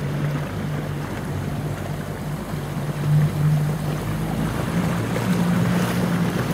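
Boat engine running steadily with a low hum, over the wash of water along the hull; the hum rises slightly near the end.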